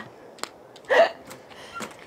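A woman's laughter trailing off: a click, then one short, high, hiccup-like laugh about a second in.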